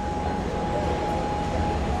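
Electric motor of a power-folding third-row seat whining steadily as the seatback folds down flat.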